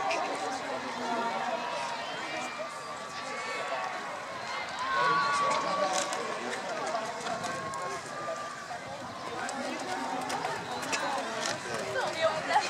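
Indistinct voices of people around the ring, over the hoofbeats of a pony cantering on a sand arena.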